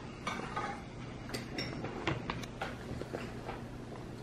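Spoons and forks lightly clinking against ceramic soup bowls at a table, a scattered handful of short taps.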